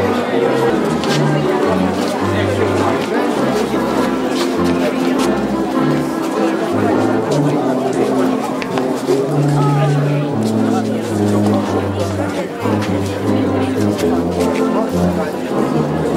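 Music with a steady bass line playing in the open air, over the chatter of a crowd of people talking.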